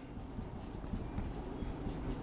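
Marker writing on a whiteboard: a run of faint, short strokes as a word is written letter by letter.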